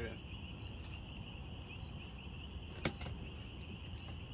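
Crickets chirring steadily, with one sharp click about three seconds in.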